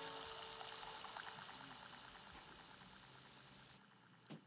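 A guitar chord ringing out and fading away, leaving a faint hiss that cuts off suddenly near the end.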